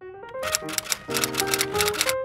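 Typewriter sound effect: a quick run of sharp key clacks, roughly a dozen strokes, over intro music with piano notes. The clacking stops at the very end, while the music carries on.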